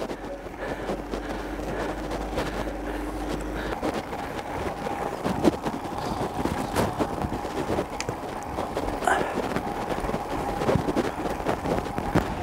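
Outdoor ambience on a mountain road: an even rushing noise with scattered light clicks. A low hum runs under it for the first few seconds and stops abruptly.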